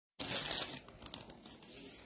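Rustling and scraping of a hand handling a smartphone close to its microphone, loudest for about half a second at the start, then fading to quieter rustles with a faint click.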